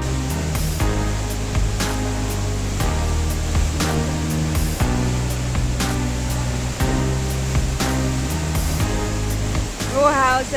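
Background music with a steady beat, laid over the continuous rushing noise of a tall waterfall's falling water.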